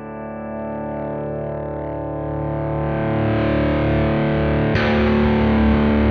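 Fender Player Lead III electric guitar (two humbuckers) through an amp: a chord struck and left ringing, growing louder as it sustains, then struck again near the end.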